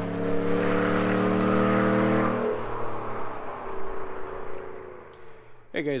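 Ram 1500 Rebel pickup's engine and exhaust, moving away at road speed just after driving past. The note falls in pitch at the start, holds steady for a couple of seconds, then fades out.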